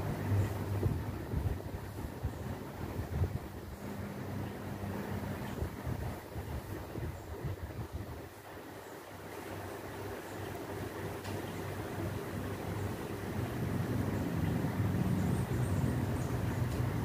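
Low background rumble with a steady hum, dipping about halfway through and swelling again near the end.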